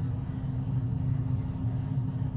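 Steady low background rumble with a faint constant hum; no distinct event.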